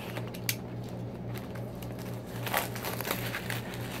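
Plastic shrink-wrap on a trading-card box being slit with a small blade and pulled off: crinkling and crackling with a few sharp clicks, busiest about two and a half seconds in.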